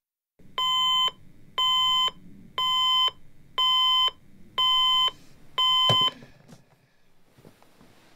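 Alarm clock beeping: six even, half-second electronic beeps about once a second, loud. Just before 6 s a thump, and the beeping stops, as if the alarm is switched off; faint rustling follows.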